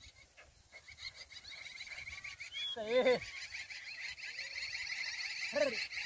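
Sheep bleating twice, each a short quavering call, the first about three seconds in and the second near the end. Behind the bleats runs a faint, high, fast-pulsing chirr.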